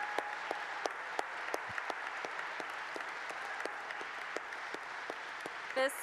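A large audience applauding, with one person's claps sharp and close by, about three a second.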